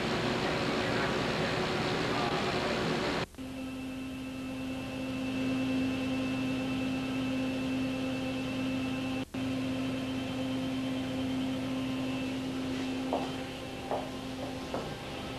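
Continuous film processing machine running with a dense, even noise, cut off abruptly a little over three seconds in. A quieter, steady equipment hum with one held tone follows, with a brief dropout past the middle and a few light clicks near the end.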